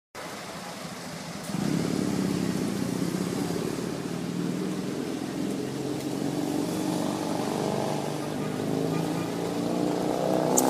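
A motor engine running steadily nearby, growing louder about one and a half seconds in.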